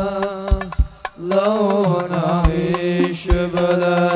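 Hadroh devotional song: a held, wavering sung line over frame drums, with sharp strikes and deep bass beats at an uneven pace. The music drops out briefly about a second in, then the voice comes back on a long, bending note.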